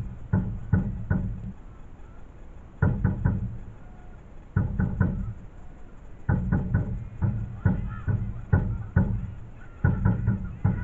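Supporters' drum beaten in quick rhythmic groups of three or four heavy thumps, with short pauses between the groups and a steadier beat in the last few seconds.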